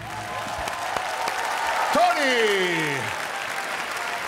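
Studio audience applauding as a song ends. About two seconds in, a voice calls out once with a long falling pitch over the clapping.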